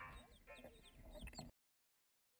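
Chicks peeping with short, rising chirps alongside a broody hen's soft clucking; the sound cuts off suddenly about a second and a half in.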